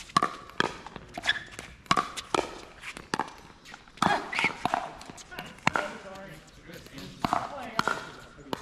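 Pickleball paddles hitting a plastic pickleball during a doubles rally: a series of sharp pops spaced roughly half a second to a second and a half apart, with the rally ending near the close.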